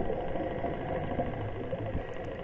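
Steady, muffled underwater rumble heard through a diving camera's housing, with no distinct strikes or calls.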